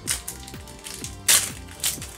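Foil booster-pack wrapper crinkling and tearing as a pack is opened by hand, in three short crackly bursts, the loudest a little past halfway, over background music.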